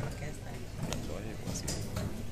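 Indistinct voices of people talking in a hall, with a couple of short sharp clicks, one around the middle and one near the end.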